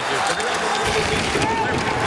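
Arena crowd noise at a live ice hockey game: a steady din of many voices, with a low rumble about a second in.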